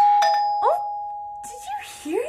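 Doorbell chime struck once: a bright two-tone ding rings out suddenly and fades away over about a second and a half.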